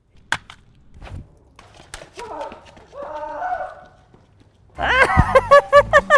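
A single sharp crack about a third of a second in, then a dull thud about a second in. Muffled vocal sounds follow, and a person's voice rises loudly near the end.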